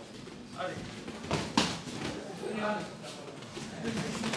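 Gloved punches landing in an MMA exchange: two sharp slaps about a third of a second apart, around a second and a half in, the second the louder.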